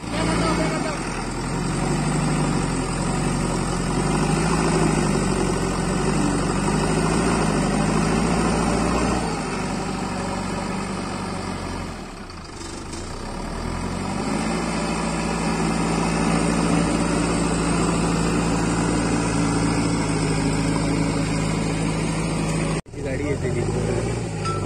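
JCB backhoe loader's diesel engine running under load as it works its front bucket in loose earth; the engine note dips briefly about halfway, then rises and holds at a higher speed.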